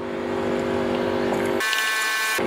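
Electric AdBlue dispensing pump running steadily with an even hum while a truck's AdBlue tank is filled through a hand nozzle. Near the end a brief higher-pitched whine with hiss takes over for under a second.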